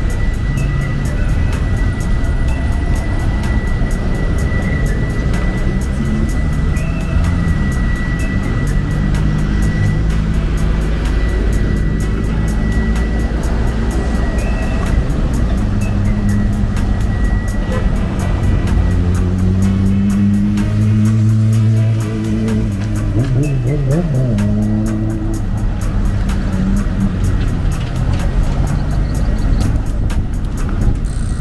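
Busy street traffic: cars and vans passing close by, their engines rising and falling in pitch as they accelerate and pass, with music playing throughout.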